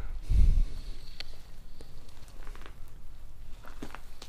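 A low thump about half a second in, then scattered light clicks and crunches: footsteps on rubble and broken plaster.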